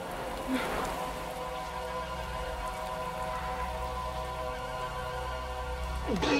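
Steady heavy rain with a sustained, held-note synthesizer score underneath; a brief louder sound stands out about half a second in.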